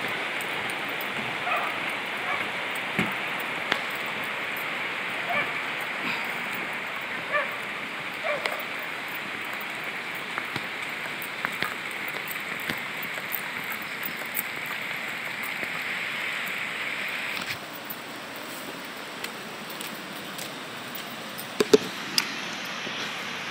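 Steady rush of a flooded river's water, with faint short calls and small clicks over it. The rush drops off suddenly about three-quarters of the way through. Two sharp knocks come near the end.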